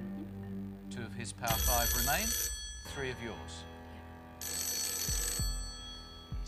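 Telephone ringing twice, each ring about a second long and the two about three seconds apart, over background music.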